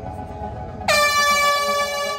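An air horn sounds a single held blast about a second in, starting the road race, over soft background music.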